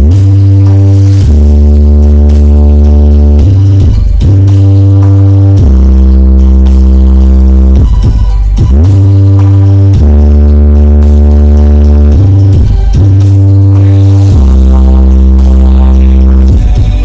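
Aeromax carreta, a huge truck-mounted speaker-wall sound system, playing music at very high volume: deep, long-held bass notes that change pitch every couple of seconds, broken by short sweeping glides.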